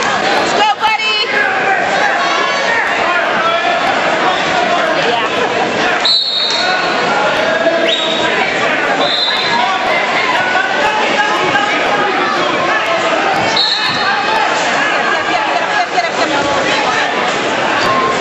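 Spectators' voices and chatter in a gymnasium, constant and echoing around a youth wrestling bout, with a few brief high-pitched tones near the middle.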